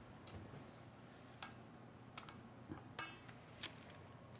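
A few faint, scattered clicks and taps of kitchen utensils being handled at a counter, about six in all, the clearest about a second and a half in, over a quiet room.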